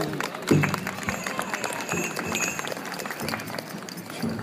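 Audience clapping after a speech: a dense patter of hand claps with a brief voice about half a second in. A thin high tone is held through the middle of the clapping.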